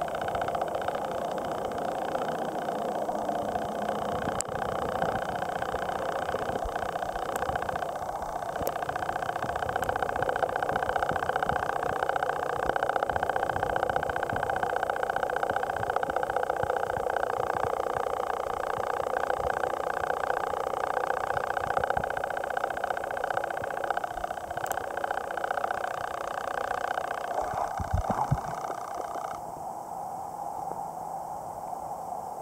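Steady, muffled rushing hum of water heard through a submerged camera, with a few faint ticks and a low thump near the end.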